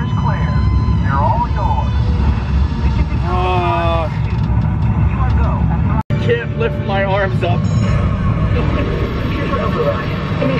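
Loud, steady low rumble of a simulated rocket launch played inside the Mission: Space ride capsule, with voices over it.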